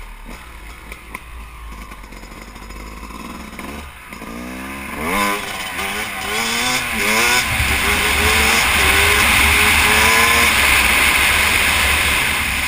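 Yamaha YZ250 two-stroke dirt bike engine, quiet under wind for the first four seconds, then accelerating hard: a run of quick rises in pitch with drops between them as it shifts up, then one longer steady climb. Wind rushes loudly on the microphone as the speed builds.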